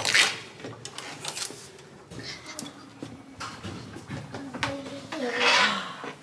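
Hotel room door opening after a key-card lock releases: a sharp latch clack at the start, then quieter handling and movement noise, with another brief rustling burst near the end.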